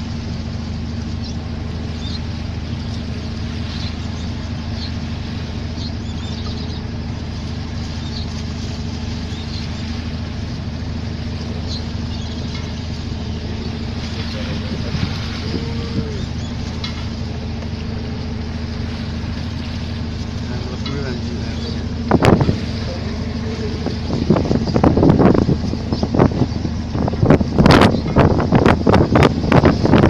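Steady drone of a boat engine on a vessel in rough sea. From about three-quarters of the way through, strong wind gusts buffet the microphone in loud, irregular bursts that drown out the engine.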